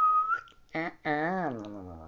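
A man whistles one short, steady high note that lifts slightly at its end, then makes a drawn-out wordless mumble that slides down in pitch.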